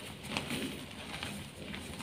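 Crushed gym chalk powder and crumbs sifting softly through gloved hands, with a few small crunchy clicks. A bird coos in the background.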